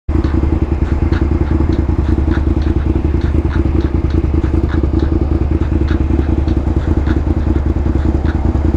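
Suzuki SV650's V-twin engine idling steadily while the motorcycle stands still, heard close up from the rider's seat.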